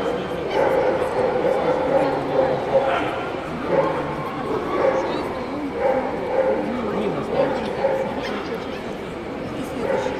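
A dog yapping repeatedly, about once a second, over the chatter of a crowd.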